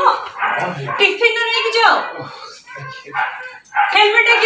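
People talking, speech that is not in English.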